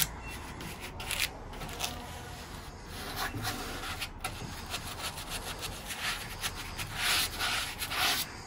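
Bristles of a flat paintbrush rubbing paint onto a wooden panel in short, uneven scrubbing strokes, growing louder near the end.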